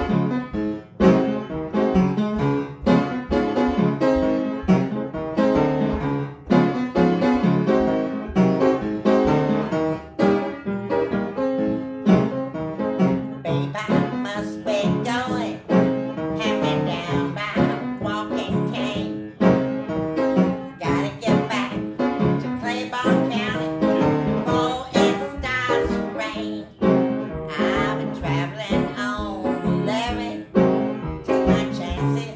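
Upright piano playing a blues tune, with a steady stream of notes, and a woman's voice joining in about halfway through.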